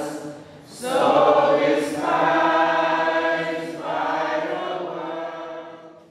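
A choir singing in long held phrases. The sound dips briefly about half a second in and fades out near the end.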